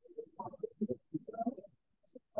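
A faint, muffled voice mumbling indistinctly in short broken bits.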